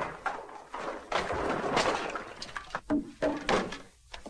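Rummaging noises: about a second and a half of rustling and clattering, then a few separate knocks and thuds, as things in a bedroom are pulled about and searched through.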